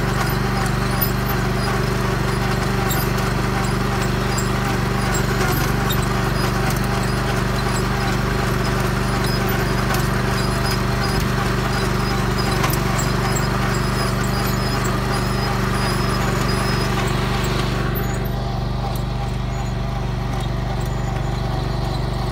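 Tractor engine running steadily while pulling a bed former and plastic-mulch layer, with the implement's clatter and light regular ticking over the engine hum; about 18 s in the higher clatter drops away and the engine hum carries on.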